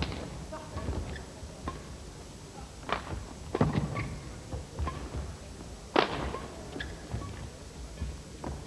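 Badminton rally: sharp racket strikes on the shuttlecock, the loudest at the start and about six seconds in, with players' footfalls and short shoe squeaks on the court between shots.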